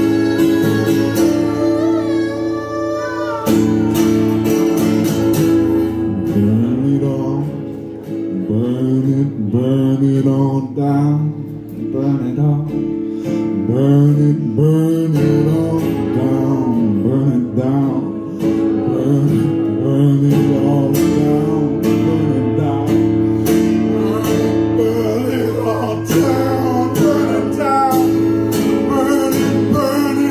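Acoustic guitar strummed steadily through held chords, with a voice singing over it in long, bending lines, mostly in the middle stretch.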